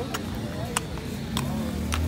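Horse's hooves clopping on cobblestones at a walk: four sharp clacks a little over half a second apart, over a low steady hum.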